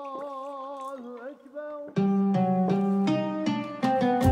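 Background music. A long held note with a slight waver fades out a little over a second in, and about two seconds in a louder plucked-guitar tune starts with a steady rhythm.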